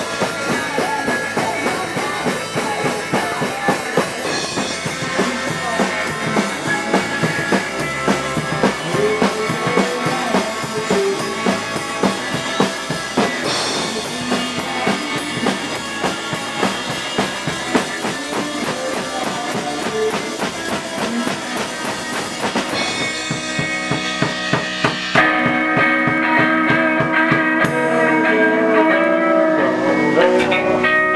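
A band playing live in a small room: a drum kit with electric guitars. About 25 seconds in the drumming drops out and the guitars ring on, somewhat louder.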